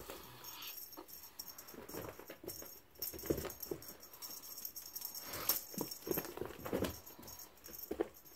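A cat's wand toy jingling and rattling in irregular shakes, with soft thumps and scuffs as the cat pounces on carpet.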